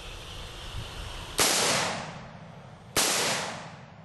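Two rifle shots from a Bushmaster AR-15 about a second and a half apart, the first about a second and a half in, each ringing out over about half a second.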